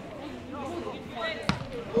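A football struck once, a single sharp thud about one and a half seconds in, over faint calls from players on the pitch. Loud shouting breaks out at the very end.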